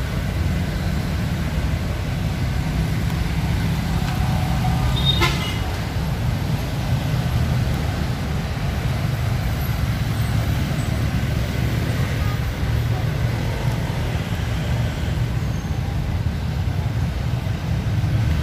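A steady low rumble with no clear pitched source, with a faint brief click about five seconds in.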